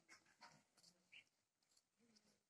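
Near silence: faint background with a few soft ticks and one brief, faint high-pitched squeak about a second in.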